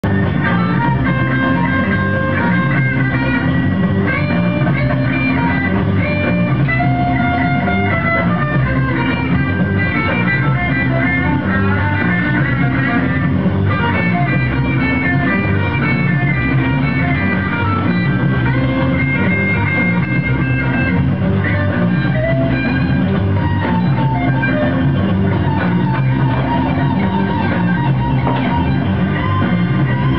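Rock music with electric guitar and a steady beat.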